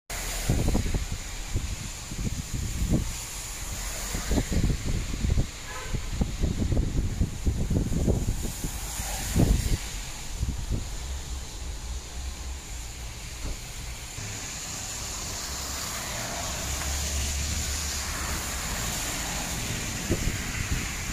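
A car driving: road and engine rumble heard from inside the moving car. Irregular low thumps come through the first half, and a steadier rumble with hiss follows.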